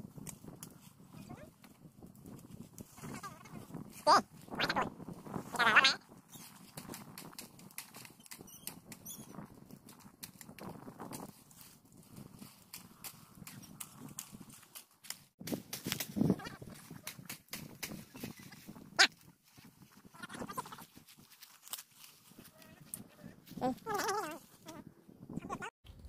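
Bamboo poles and cut leafy branches being handled while a bed frame is built, giving scattered knocks, clicks and leaf rustling. A few short pitched calls, the loudest sounds, come now and then.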